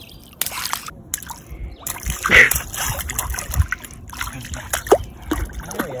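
A toddler's hands slapping and scooping shallow lake water, making irregular splashes and sloshes, with the loudest burst a little over two seconds in.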